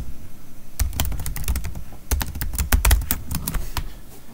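Typing on a computer keyboard: a rapid, uneven run of keystrokes in short bursts, with a brief pause just after the start.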